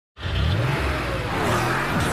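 Animated race car's engine sound effect revving as the car speeds off, starting abruptly just after the beginning, with gliding pitch.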